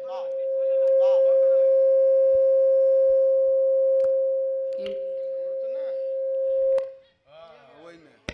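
Public-address feedback: a loud, steady, high-pitched howl on a single pitch, holding for about seven seconds and then cutting off suddenly. Faint voices run underneath.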